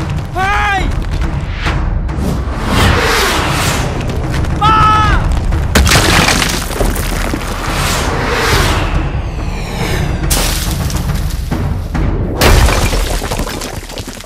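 Cartoon action sound effects: heavy booms and crashing, shattering rock over a low rumble and dramatic music, with the loudest crashes about 6, 10 and 12 seconds in. Two short cries break through, near the start and about 5 seconds in.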